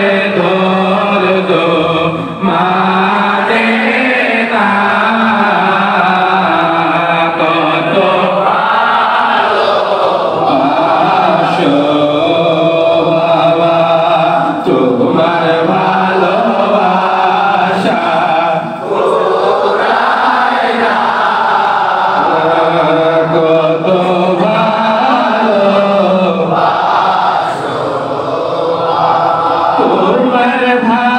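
Men's voices chanting a Bengali Sufi devotional song (sama) together, steady and continuous, with a few brief breaks between phrases.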